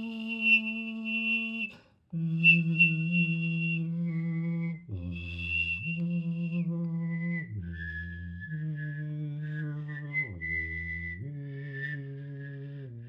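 A person whistling a high melody while voicing a low line at the same time, two-part music made with mouth and throat alone. The notes are long and held, changing pitch every second or two, with a short break about two seconds in.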